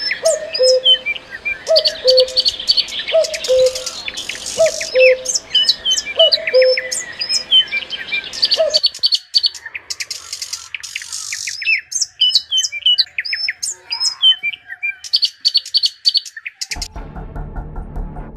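Several birds chirping and calling in quick, overlapping high calls, with a lower call repeating less than a second apart through the first half. Music with a low drone comes in near the end.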